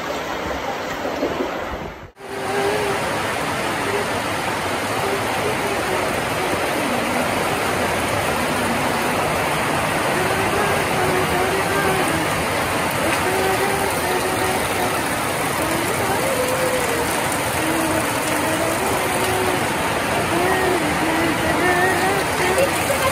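Heavy rain falling steadily, with water pouring off the edge of a sheet-metal roof; it starts suddenly after a cut about two seconds in and holds an even hiss throughout.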